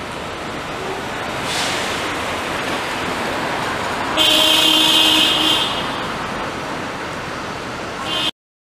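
City street traffic noise, with a vehicle horn sounding for about a second and a half around the middle.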